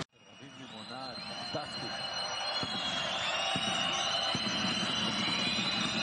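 Basketball game sound fading in: a ball dribbled on a hardwood court, a bounce roughly once a second, over arena crowd noise with some high, held tones.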